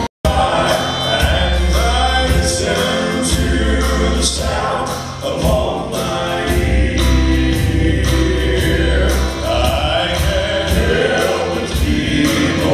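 Male southern gospel quartet singing in close harmony over live band accompaniment, with a steady bass line and regular drum hits. The sound cuts out for a split second right at the start.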